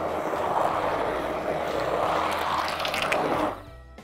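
Hand-held immersion blender running steadily in a glass bowl of thick cheesecake batter, giving it a final thorough mix after the flour and salt go in. It is switched off about three and a half seconds in.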